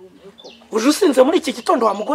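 Speech: a man talking in a loud, animated voice, starting just under a second in after a brief lull.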